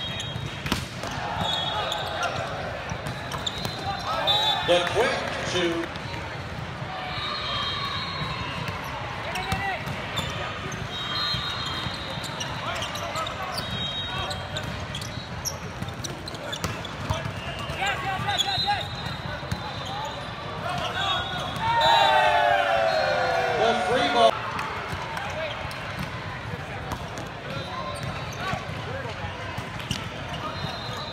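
Indoor volleyball in a large, echoing hall: sharp ball hits and bounces over a constant background of players' calls and onlookers' chatter. One loud, drawn-out shout falling in pitch comes about two-thirds of the way through.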